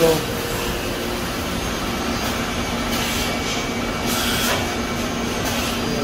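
Steady machine hum with one constant low tone and a noisy wash over it, from a Brother TC-22B CNC drilling and tapping center running.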